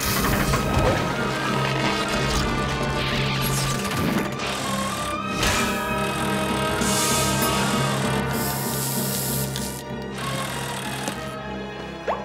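Cartoon background music, steady throughout, with mechanical sound effects layered over it: a few bursts of hiss, the longest about seven to nine seconds in.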